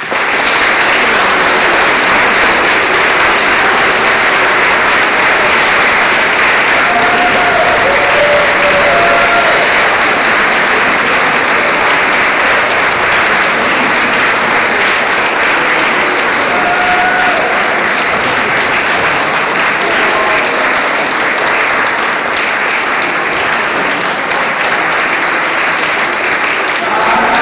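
An audience applauding steadily, dense clapping that begins abruptly and holds throughout, with a few faint voices in it.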